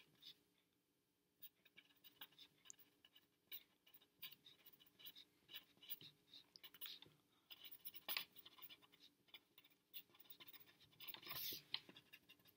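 Faint handwriting: a pen scratching across lined paper in quick short strokes. A brief pause comes in the first second or so, then the writing carries on steadily.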